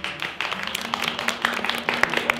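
Audience clapping, starting sparse and quickly growing denser and louder.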